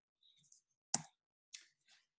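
Near silence broken by a single sharp computer-mouse click just before the middle, as the presentation slide is advanced.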